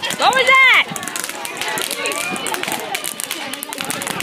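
A person's loud, rising-and-falling exclamation in the first second, then the steady crackling of a ground fountain firework spraying sparks on the pavement, with faint voices behind it.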